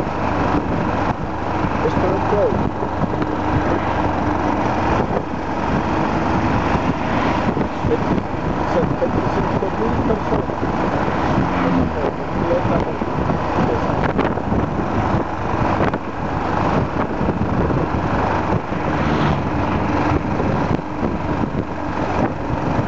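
Motorcycle riding along a highway at a steady pace, its engine running under loud, steady wind rush on the mounted camera's microphone.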